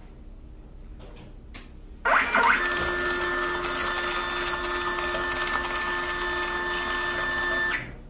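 Honeywell PC42t desktop thermal-transfer label printer feeding and printing a strip of labels. Its motor runs with a steady whine of several held tones that starts suddenly about two seconds in and cuts off just before the end, after a faint click.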